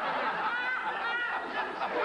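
Studio audience laughing, many voices at once at a steady level.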